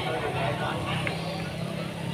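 Indistinct background chatter of several people over a steady low hum.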